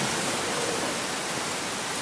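Steady hiss of background noise, even and unchanging, with no speech.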